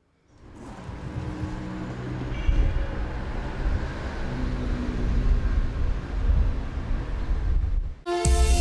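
A low, steady rumble swells in from silence over the first two seconds and holds, with a few faint steady tones above it, then cuts off just before the end.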